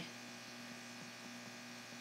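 Faint, steady electrical hum with a slight buzz: the background noise of the recording setup.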